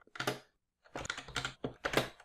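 Keystrokes on a computer keyboard: a single key press, a pause, then a quick run of several keys in the second half.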